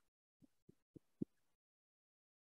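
Near silence broken by about four faint, muffled hand claps in the first second and a half, spaced roughly a quarter second apart, the last the loudest.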